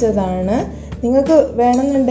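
A steel ladle clinking a few times against a pressure cooker and bowl as cooked vermicelli is scooped into the soup, under a woman's voice.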